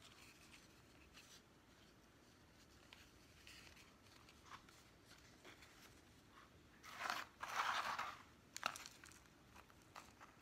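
Potting mix being pressed and pushed into a small plastic plant pot by hand: faint scratching and ticking, then a burst of gritty crunching and rustling about seven seconds in, followed by a sharp click.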